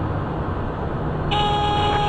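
A steady pitched cockpit alert tone sounds for just under a second, starting past the middle, over the constant hum of a Cessna Citation 501 cockpit in flight.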